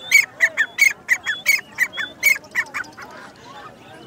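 Caged birds calling: a rapid run of harsh squawks, about three a second, that stops about three seconds in.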